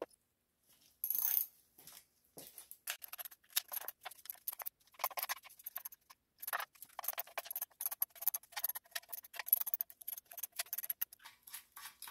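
Hand ratchet clicking in quick, uneven runs while the bolts of an oil pan are driven in around the engine block, with a few light metal clinks.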